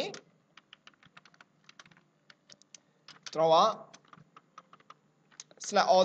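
Typing on a computer keyboard: a run of faint, quick key clicks, broken briefly a little past the middle and picking up again before the end.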